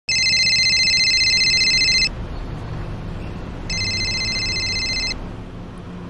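Mobile phone ringing with a high, rapidly trilling electronic ringtone: two rings, the second shorter, before the call is answered.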